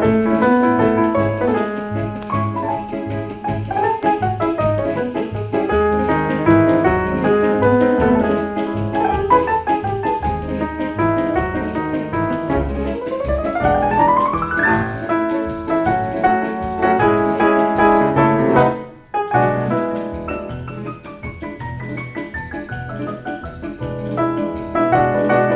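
Piano with rhythm-section accompaniment playing Latin American popular tunes over a pulsing bass line. A fast rising run comes about halfway through, and there is a brief break a little past three-quarters of the way before the piano picks up again.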